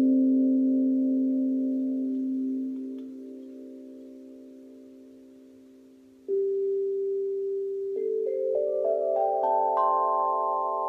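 GANK steel tongue drum struck with mallets: a low note rings and slowly fades for about six seconds, then a new note is struck, and near the end a quick rising run of single notes climbs its pentatonic scale, each note left ringing.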